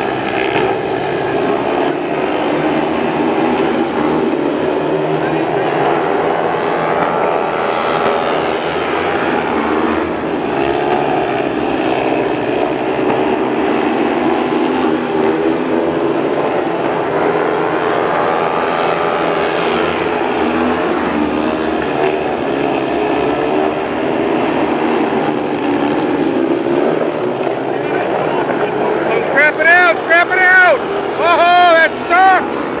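Speedway bikes' 500cc single-cylinder methanol engines racing around the dirt oval. The pitch rises and falls as the bikes swell past and fade away through the turns.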